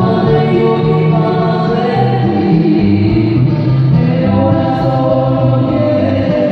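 Live band music amplified through a stage PA: voices singing over acoustic guitar, at a steady loud level.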